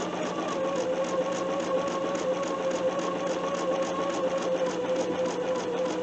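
Bernina 770 QE sewing machine running at a steady speed, stitching a seam through two fabric strips: a steady whir with a fast, even needle rhythm.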